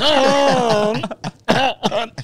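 A man's put-on coughing and throat clearing, made on purpose to draw attention. One drawn-out voiced cough comes in the first second, then short sharp coughs follow about a second and a half in.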